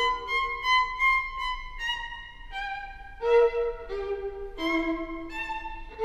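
Music: a solo violin melody of separate notes, some short and some held.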